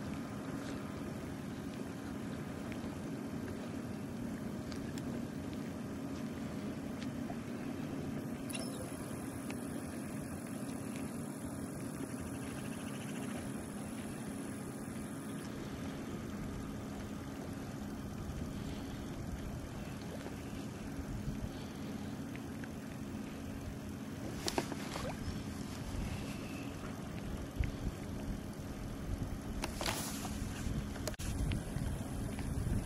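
A steady low mechanical hum under an even hiss, with a few sharp clicks in the last few seconds.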